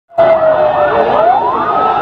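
Loud ambulance siren that starts abruptly, its wail dipping slightly in pitch and then rising in one slow, smooth glide.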